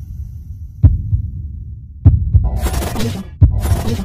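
Cinematic intro sound design: a low droning rumble struck by three deep booms, about one every 1.3 seconds. In the second half come two bursts of crackling, static-like noise.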